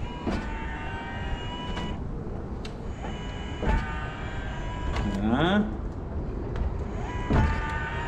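Electric stair-climbing dolly (ZW7170G) with a washing machine strapped on: its motor whines in runs, with several sharp knocks from the climbing mechanism as it works against the first step.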